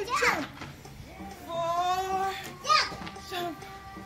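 A toddler's high voice calling out, with a long held cry in the middle and short squealing glides near the start and just before the end, over background music.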